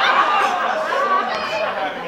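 Several people's voices talking over one another in chatter.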